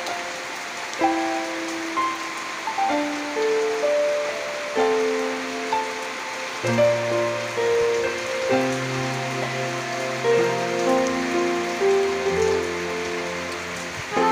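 Steady rain falling, a continuous even hiss, with a slow melody of long held notes from background music over it.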